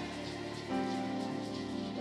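Soft sustained keyboard pad chords held under a steady airy hiss, with the chord changing about two-thirds of a second in.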